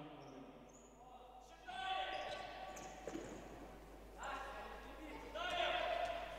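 Players shouting to each other across an echoing indoor sports hall, with a few knocks of a futsal ball on the parquet floor.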